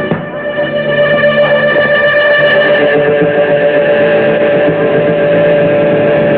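Distorted electric guitar from a live hardcore punk band, ringing out in long sustained notes, with a short dip in level right at the start.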